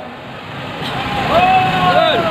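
Crowd noise, then about a second in a vehicle horn sounds and is held for about a second, with a slightly wavering pitch.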